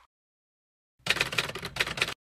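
A rapid run of typewriter-style key clicks, the typing sound effect that goes with on-screen text being typed out. It starts about a second in, after complete silence.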